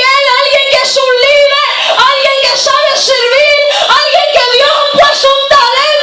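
A woman singing loudly and unaccompanied into a handheld microphone, her high voice holding and sliding between notes.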